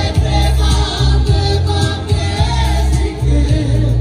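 Live amplified band music: male vocalists singing into microphones over an electronic keyboard, with a heavy, pulsing bass beat.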